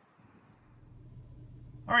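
Faint, steady low hum of background noise that swells slowly. A man starts speaking just at the end.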